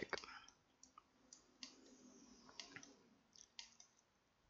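Faint clicks of a computer mouse, half a dozen or so scattered irregularly over a few seconds, against near silence.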